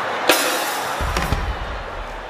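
A brief burst of music: a bright crash about a third of a second in, followed by a deep bass boom from about a second in.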